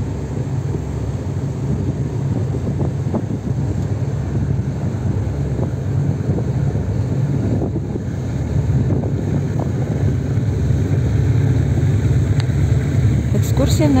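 Steady low rumble of a river tour boat's engine under way, with wind buffeting the microphone and faint voices of passengers. It swells a little in the last few seconds.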